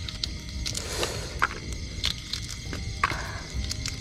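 Scattered small cracks and rustles of boiled duck eggshells (balut) being cracked and peeled by hand.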